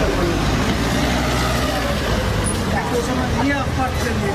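Street noise with a vehicle engine running, a low steady hum, under several people talking in a crowd; near the end a man's voice begins a question.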